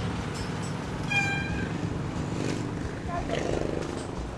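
Street background noise with a short, steady, high-pitched tone about a second in, lasting about half a second, and a faint distant voice near the end.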